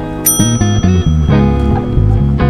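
Background guitar-and-bass music, with a single bright bell ding about a quarter second in that fades over about a second: the notification-bell sound effect of a subscribe-button animation.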